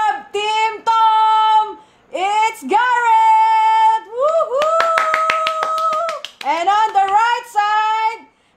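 A high voice singing or calling out in long drawn-out notes, several in a row with short breaks between them. Quick hand claps run under one long held note in the middle.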